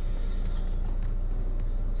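Steady low rumble inside a car cabin, typical of the car's engine idling.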